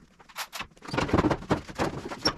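Steel front fender on a vintage Dodge Power Wagon being handled and set against the truck body: an uneven run of metal knocks and clunks, coming thicker in the second half.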